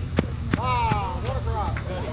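Softball players shouting to each other, one long call falling in pitch. Just before it come two sharp knocks about a third of a second apart.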